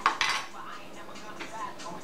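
A short clatter of hard makeup items, a powder container and brush, being picked up and handled on a table, followed by a few faint taps.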